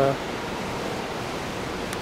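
Steady, even hiss of background noise with no distinct events in it.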